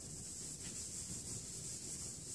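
Eraser wiping chalk off a blackboard in steady strokes, a faint continuous rubbing.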